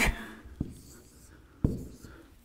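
Two short clicks of a dry-erase marker at a whiteboard, a faint one just after the start and a sharper one about a second later.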